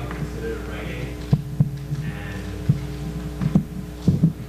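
Steady electrical hum from the hall's sound system, broken by about five short, dull low thumps of a table microphone being handled.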